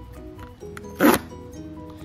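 Cardboard tear strip of a blind box ripped open in one short, loud pull about a second in.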